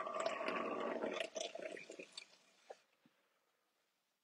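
Wet clay and slip squelching under the potter's hands at the wheel, with small clicks and a faint steady tone underneath. It fades out about three seconds in, leaving near silence.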